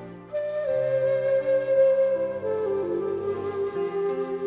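Ancient Hopi Flute, a pentatonic flute with a kena-style notched mouthpiece, playing a slow melody: a long held note comes in about a third of a second in, sags slightly, then steps down to lower notes in the second half, over steady lower tones.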